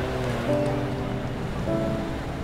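Background film score of sustained notes, moving to new notes about half a second in and again near the end, over a low rumble.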